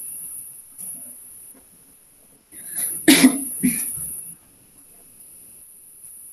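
A person coughing twice in quick succession, about halfway through, heard over a video-call connection.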